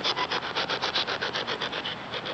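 Spirit box (ghost box) sweeping through radio frequencies: rapid, even pulses of static, about ten a second.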